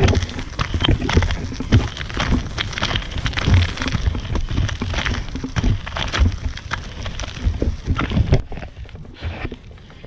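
Air-filled tires of Powerslide Kaze Tundra SUV off-road inline skates rolling over a gravel road: a dense crackle of grit under the wheels over a low rumble. It drops away sharply a little before the end.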